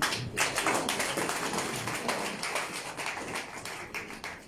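A small audience clapping: a dense patter of hand claps that starts right after a sentence ends and slowly dies away.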